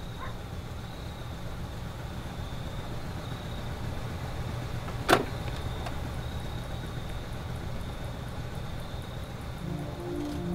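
Car engine idling with a steady low rumble, and a single sharp click about halfway through as the car door's latch opens.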